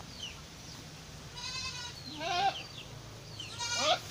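Goat bleating: three calls, the second and third wavering in pitch and the loudest, the last just before the end. Small birds chirp faintly throughout.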